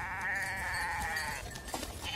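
A goat bleating once: a single quavering call that lasts about a second and a half.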